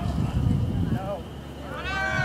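Shouted calls from people at a baseball field: short pitched calls about a second in, then a louder, longer, high rising-and-falling yell near the end, over a low outdoor rumble.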